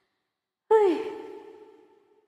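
A woman's short audible sigh, sudden and falling quickly in pitch about two-thirds of a second in, then trailing away over about a second.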